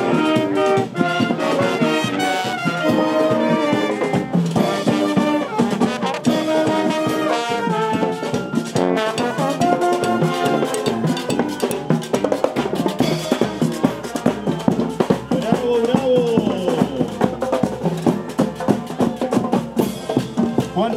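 School marching band playing: saxophones, trumpets and sousaphones carry a melody over snare and tenor drums.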